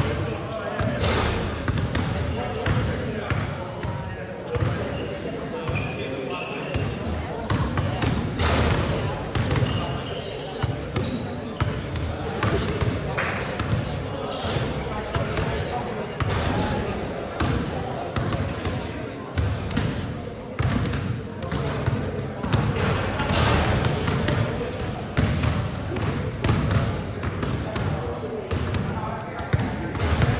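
Several basketballs being dribbled and bounced on a hard sports-hall floor at once, making a steady stream of overlapping, irregular thuds.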